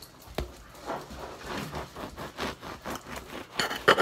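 Large kitchen knife sawing through the crust of a loaf of bread: a run of short, irregular rasping strokes, with a sharp click about half a second in and a louder crunching burst near the end.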